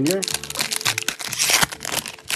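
A foil trading-card pack wrapper from 2022 Donruss Optic football cards being torn open and crinkled by gloved hands. It makes a dense crackle that is loudest about a second and a half in.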